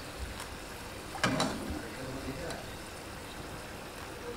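Steady low background hiss and hum, with a short burst of voice about a second in.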